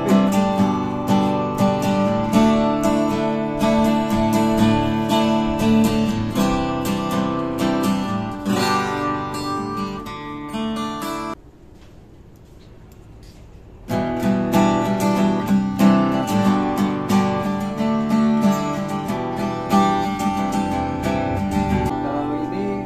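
Solid acoustic cutaway guitar being played, strummed chords ringing out. The playing breaks off for about two and a half seconds midway, then starts again.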